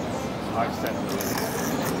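Steady outdoor background noise with faint, brief bits of voice.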